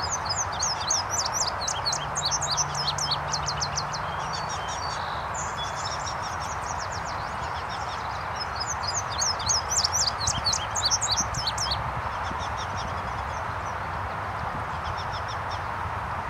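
Male indigo bunting singing: a run of rapid, high, sweet notes lasting a few seconds, repeated about eight seconds later and faintly again near the end, over steady background noise.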